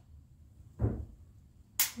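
A Ruger Max 9 pistol being dry-fired on an empty chamber. A single sharp click comes near the end as the trigger breaks and the striker falls.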